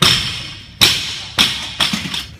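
Barbell loaded with rubber bumper plates dropped onto a wooden lifting platform, landing hard and bouncing: four loud impacts in under two seconds, each followed by a short ringing decay.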